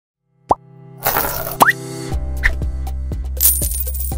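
Logo-intro sting: a moment of silence, then a quick pop rising in pitch about half a second in, a whoosh with two more rising pops, and from about two seconds in a steady bass line with a pattern of plucked notes.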